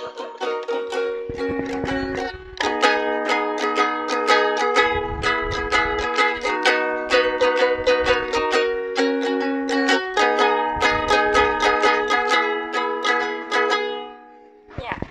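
A ukulele strummed through a short tune in quick, even strokes, with the chords changing every few seconds. A few stretches of low, dull thumping sound underneath.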